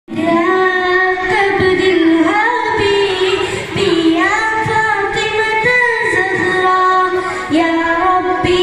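A boy singing a Nabidina song, a Malayalam devotional song for the Prophet's birthday, solo into a microphone, with long held notes that bend and glide between pitches.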